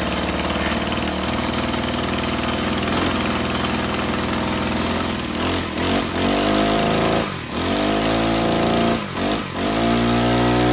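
Troy-Bilt four-stroke string trimmer engine running on a newly fitted carburetor, just after starting. It idles steadily for about five seconds, then is revved up and down with the throttle several times.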